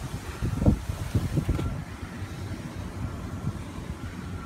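Low rumble with a few soft thumps in the first second and a half: handling noise of a handheld phone moving about inside a parked car.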